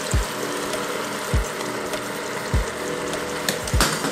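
Soy sauce and vinegar poured into a hot stockpot of seared chicken, hissing and sizzling steadily. Background music with a soft low beat about every 1.2 seconds plays under it.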